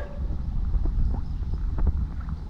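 Low, steady wind rumble on the microphone with water moving around a wader's legs, broken by a few faint clicks about a second in and near the end.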